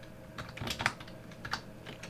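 Typing on a computer keyboard: several separate keystrokes at an uneven pace.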